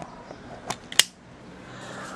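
Two short sharp clicks a little under a second apart, the second one louder, over low background noise: handling clicks from a small object knocked or set down on a workbench.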